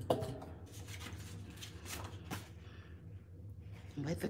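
Light handling noises of art materials on a work table: a sharp knock at the very start, then a few soft rustles and clicks as a stencil and a sheet of printing paper are moved over the gel plate, over a steady low hum.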